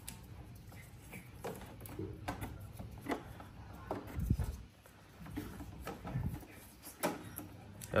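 Handling noise as a thin steel guide wire and electrical cable are threaded through a Yamaha NMAX's plastic front body panel: scattered small clicks and scrapes of wire against plastic, with a couple of dull thumps about four and six seconds in.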